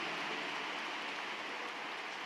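Steady, even hiss-like background noise in the church hall with no clear events in it.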